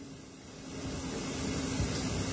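Steady background noise in a pause between speech, growing a little louder through the pause, with a faint high steady tone coming in about a second in.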